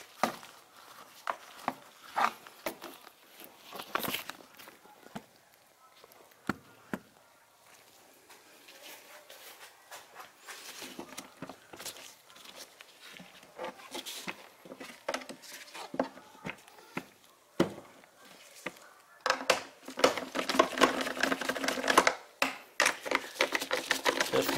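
Scattered clicks and knocks of a plastic air filter housing cover being handled and seated into place, growing denser near the end.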